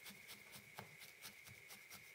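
Faint, evenly spaced pokes of a felting needle stabbing into wool, about four a second, tacking a layer of wool roving onto a needle-felted body.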